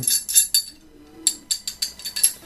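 Light metallic clicks and clinks from an 8-inch RIDGID heavy-duty end pipe wrench as its hook jaw and adjusting nut are worked by hand, checking the jaw's play. The clicks come in two bunches with a short pause about a second in.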